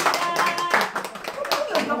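Several people clapping their hands unevenly, with voices talking over it.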